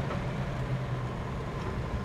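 Steady low drone of the Chevelle's big-block V8 and road noise inside the cabin as the car brakes, with no brake squeal or clunk.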